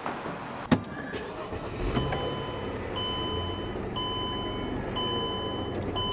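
Car engine starting and running at idle, with the dashboard warning chime beeping steadily about once a second. A single sharp knock comes just before, under a second in.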